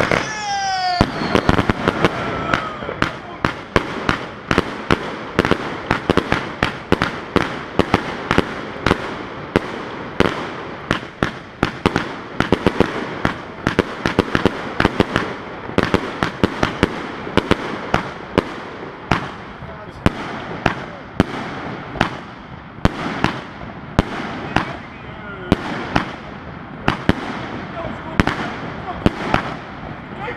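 Compound firework cake (a 288-shot 'Triplex') firing a rapid, steady string of shots, about three sharp bangs a second, with the aerial bursts crackling. There is a brief whistle in the first second.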